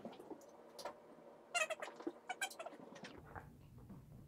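A dog nosing at small metal tins on a foam mat: a scatter of light clicks, scuffles and quick sniffs, busiest around two seconds in.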